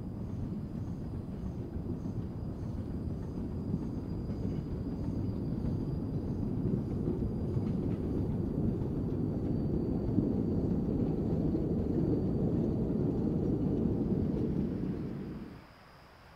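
Rumble of a narrow-gauge forest railway train, hauled by the Amemiya No. 21 steam locomotive, running on the track. It grows steadily louder, then cuts off suddenly near the end.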